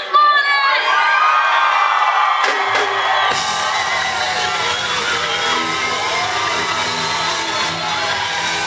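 Concert crowd cheering and shouting. About three seconds in, a live funk band starts playing with drums and bass guitar, and the cheering carries on over the music.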